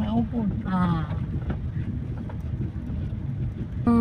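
Car moving slowly, heard from inside the cabin: a steady low rumble of engine and road noise.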